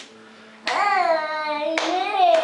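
A hand clap, then a child's voice holding a long sung note for about a second with pitch gliding down slightly; a second clap breaks in near the end and the voice carries on into another held note.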